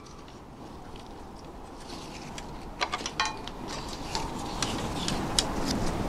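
Light scattered clicks and rustling as a strap of joined ties is handled and pulled around a telescope tube, over a steady outdoor background hiss that rises slightly.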